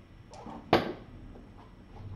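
A single sharp knock about three-quarters of a second in, after a softer scuffle, as kittens play on a fabric mat and cardboard scratcher.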